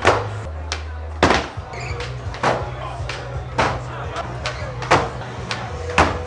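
Skateboard on a hard, smooth floor: about eight sharp cracks at uneven spacing as the tail is popped and the board lands, over a steady bass line of club music.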